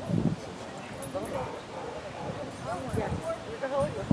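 A small dog giving short high yips mixed with people's voices, with a low thump at the start.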